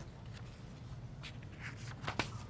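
Soft rustling and tapping of papers being handled at the council dais, picked up by the desk microphones over a low steady room hum.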